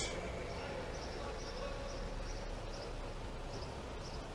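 Steady low background noise: the hiss and hum of an open microphone in a pause between the auctioneer's calls, with a faint high steady tone from about half a second in.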